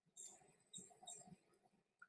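Near silence: faint outdoor ambience with a few soft, brief sounds about a quarter second in and again around a second in.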